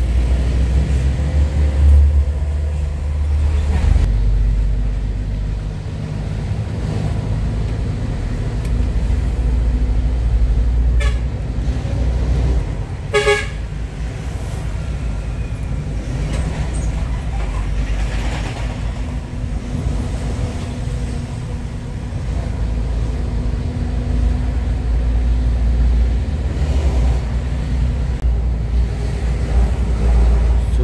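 FAW JH6 truck's diesel engine running steadily under way, heard as a deep drone inside the cab. A single short horn toot sounds about 13 seconds in.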